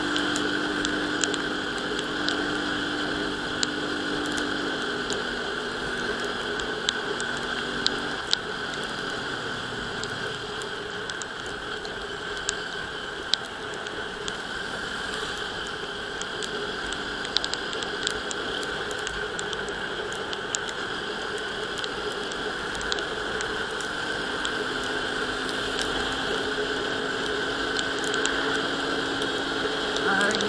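Steady riding noise from a 110 cc scooter moving on a wet road: wind rush and engine and tyre noise run together, with scattered sharp ticks of raindrops hitting the camera.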